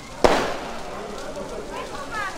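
A single loud firecracker bang about a quarter of a second in, dying away over about half a second, with people talking in the background.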